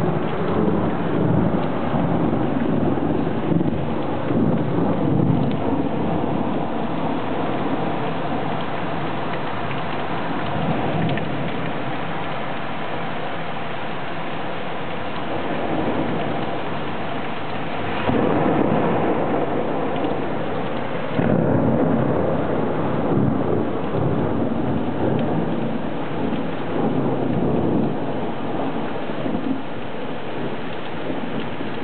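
Heavy rain pouring down in a thunderstorm, with thunder rumbling. The thunder swells louder twice a little past halfway, shortly after a lightning strike.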